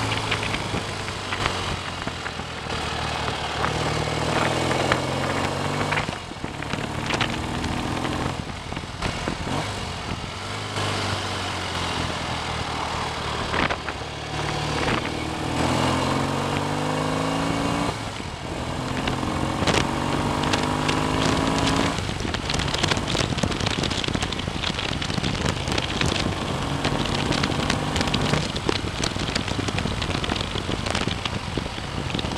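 Freshly rebuilt BSA A65 650 cc parallel-twin engine pulling the motorcycle along the road, heard from the handlebars over steady wind and road noise. The engine note climbs in pitch several times as it accelerates, dropping away in between. It is running smoothly on its running-in miles.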